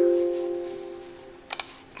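Windows error-dialog chime: two notes, the higher one just after the lower, ringing out and fading over about a second and a half, sounded as the TN3270 terminal reports it has lost its connection to the host. A short click follows near the end.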